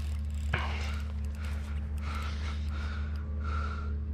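A person's breathing, several soft breaths, over a steady low hum.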